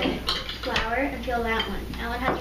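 Metal spoons clinking and scraping against ceramic bowls as dry filling is scooped into a funnel for balloon stress balls.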